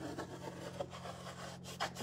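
Scratchy rubbing strokes as a decor transfer is rubbed down onto wooden slats, with a few brief sharper scrapes.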